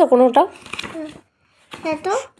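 A voice speaking briefly, then a short papery rustle from a storybook page being turned, followed by a pause and the voice starting again near the end.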